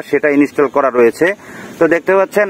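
Speech only: a man talking, with brief pauses.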